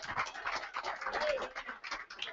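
A church congregation responding with scattered, irregular hand clapping and faint calls.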